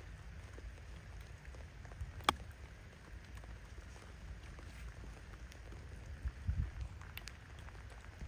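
A single sharp click of a golf wedge striking the ball about two seconds in, over faint, steady rain noise.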